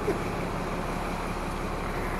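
Steady engine hum and road noise of a moving tour bus, heard from its open upper deck.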